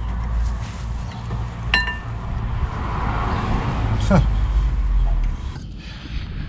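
A single metallic clink with a brief ring about two seconds in, from hands-on work on a car's rear brake caliper, over a steady low hum.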